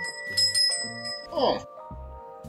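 A small bell rings out over background music, its ringing fading out about two-thirds of the way through; a short voice-like sound comes near the end of the ringing.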